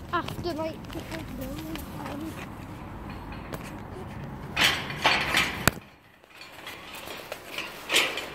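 Faint voices in the first couple of seconds, then rustling and knocks from a phone being handled and swung about, with one sharp click just before six seconds in.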